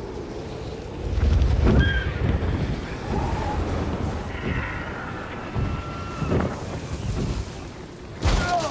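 Steady low wind-like rumble that swells about a second in, with a few short, faint high-pitched cries over it.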